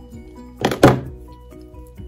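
Background music with steady notes, and two quick thunks about a quarter-second apart a little past the middle, from the craft wire being handled on the cutting mat.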